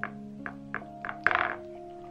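Soft lo-fi background music, with a few light clicks and one louder knock about a second and a half in as acrylic paint tubes are picked up and handled on the desk.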